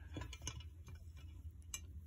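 Large land hermit crab's legs and shell tapping on glass as it walks: a few faint, scattered clicks, the clearest near the end.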